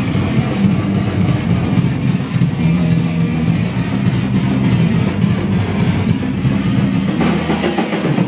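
Punk band playing live: electric guitar, bass guitar and drum kit in an instrumental stretch, with shouted vocals coming back in near the end.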